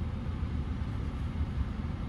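Steady low rumble of a parked car running, heard inside its cabin, with no distinct clicks or tones.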